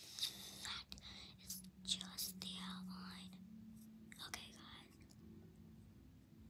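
A girl whispering, with no words made out, over a faint steady hum; the whispering stops about five seconds in.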